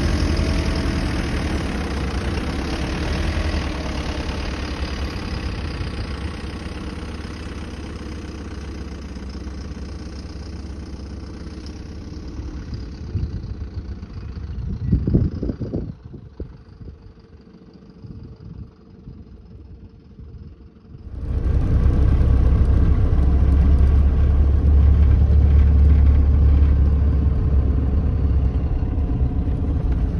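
A Mercedes Vario expedition truck's diesel engine runs as the truck drives off and fades into the distance, with a few low rumbles around fifteen seconds. After a quieter stretch, loud, steady engine and driving noise cuts in about twenty-one seconds in as the truck drives along a washboard dirt track.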